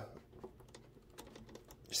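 A few faint, irregular small clicks as steel pliers and a piece of silicone tubing are handled, the tubing held stretched open on the plier jaws to be press-fitted over a cooling line.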